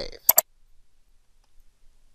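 A computer mouse button clicked once: two sharp clicks a tenth of a second apart as the button is pressed and released.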